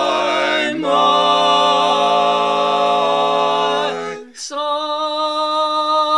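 Male barbershop harmony group singing a cappella, holding long sustained close-harmony chords. The chord shifts about a second in, and the voices break off briefly about four seconds in before a new chord is held.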